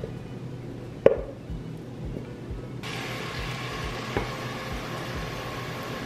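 Food being served into a ceramic bowl from a pot: a single light knock about a second in, then a steady hiss that starts abruptly about three seconds in, as black beans are tipped out of the pot.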